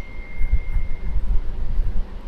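A low, uneven background rumble, with a faint steady high-pitched tone during about the first second.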